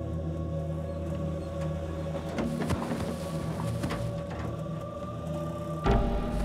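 Tense, droning film background score of steady held tones, with a few faint clicks and scrapes in the middle and a sudden low thump near the end.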